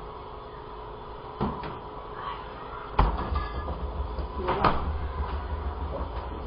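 Refrigerator door being handled and shut: a soft knock, then a louder thump about three seconds in as the door closes, and another knock a little later, over a faint steady hum.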